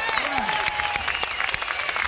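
Concert audience applauding steadily at the end of a song, a dense patter of many hands clapping, with some voices mixed in.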